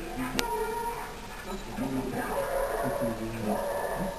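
A dog making a series of short whining sounds, with a single sharp click about half a second in.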